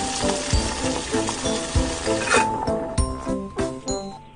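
Cartoon sound effect of a pot boiling on a stove: a steady hiss that stops a little past halfway. Light background music with short melodic notes and a beat runs underneath.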